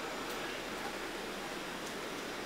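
Steady, even hiss of static with no voice over it, the background noise of a rocket launch webcast's audio feed between mission callouts.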